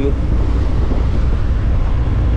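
Wind buffeting the microphone on the deck of a moving ferry, over the steady rush of the hull's wake and a deep low rumble.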